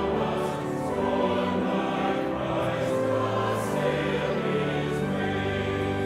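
Church choir singing in parts, holding sustained chords that move to a new chord every second or so.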